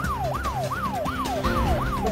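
A siren-style sound effect in a TV breaking-news music bed: a wailing tone that falls quickly in pitch and snaps back up about three times a second, over a steady low drone.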